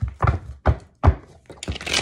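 Three dull thunks about 0.4 s apart, then a brief hiss near the end.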